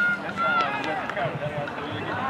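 Voices of players and spectators calling out and chattering across an open football field, with no one voice close by.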